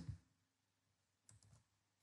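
Near silence, broken by two faint computer keyboard clicks a little over a second in.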